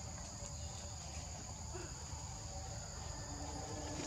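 A steady, high-pitched insect chorus holding two even tones, over a low background rumble.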